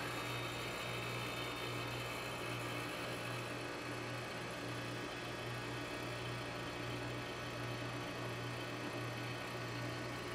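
Trane heat pump outdoor unit running in forced defrost: the compressor runs with a steady low hum while the outdoor fan stays stopped, as it should during the defrost cycle.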